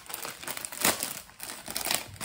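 A clear plastic clothing bag crinkling as hands handle and open it. The crackles are irregular, with one louder crackle just before a second in.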